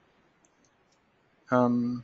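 A nearly silent pause in a man's talk, with a couple of faint computer-mouse clicks about half a second in. From about one and a half seconds a man's voice comes in with a drawn-out hesitation sound on one steady pitch.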